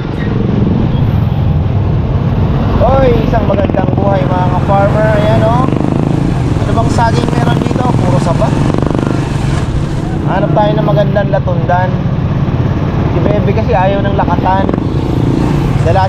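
Motorcycle engine running steadily while riding, a continuous low rumble with road and wind noise. A voice speaks off and on over it.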